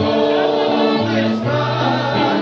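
Congregational worship singing: many voices holding a gospel song over sustained chords and a bass line that changes note about a second in.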